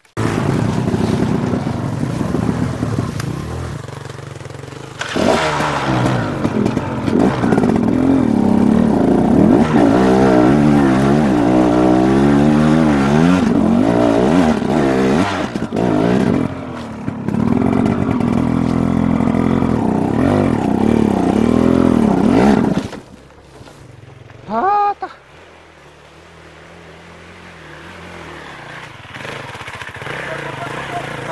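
Enduro dirt bike engine revving hard again and again, its pitch sweeping up and down as it is worked along a rough trail. About 23 seconds in the throttle closes and it drops to a low, much quieter idle.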